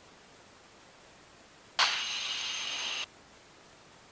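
A burst of radio static on the aircraft's headset audio feed, about a second long, starting sharply about two seconds in and cutting off abruptly, over a low steady hiss.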